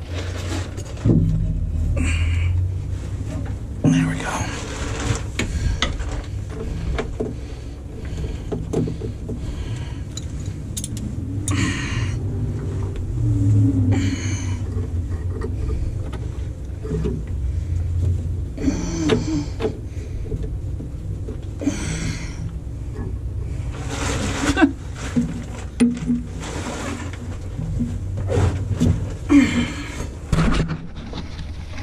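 Irregular scraping, rustling and metal clinks of hands and a wrench working at the power-steering hose fittings under a bus chassis. A steady low rumble runs underneath.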